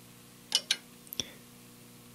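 Three short, sharp clicks from an LDG AT-200Pro II antenna tuner as its Ant button is pressed and it switches from antenna 1 to antenna 2. The first comes about half a second in and the last just after a second.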